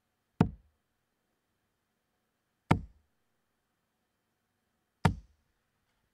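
Three darts thudding one after another into a Winmau dartboard, a little over two seconds apart. Each is a short, sharp knock that dies away at once.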